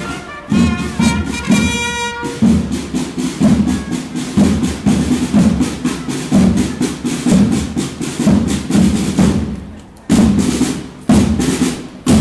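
Marching parade drums beating a steady rhythm of about two strokes a second, with a brass fanfare phrase that ends about two seconds in. The drumming drops away briefly near the end, then resumes.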